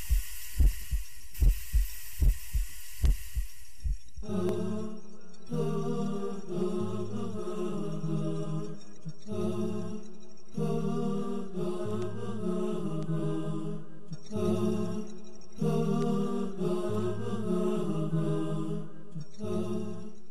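TV programme theme music. For the first four seconds or so it is a regular, paired, heartbeat-like thumping under a hiss, then it changes to chanted vocal music in repeated phrases over a low held tone.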